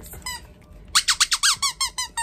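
A squeaky dog toy shaped like a steak being squeezed by hand. It gives one short squeak, then about halfway in a quick run of about eight high squeaks.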